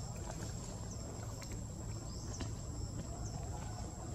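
Outdoor ambience: a steady high-pitched insect drone over a constant low rumble, with a few faint short chirps.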